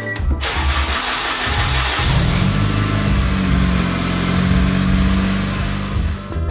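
Honda Euro-R K20 four-cylinder, swapped into a Civic, cranking on the starter and catching about two seconds in, then running steadily. This is the newly swapped engine's first start, and it fires on the first try.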